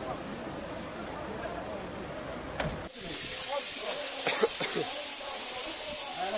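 Voices and general outdoor noise around fire engines. About halfway in, a sudden change to a fire hose spraying water onto a burnt roof, a steady hiss with voices over it.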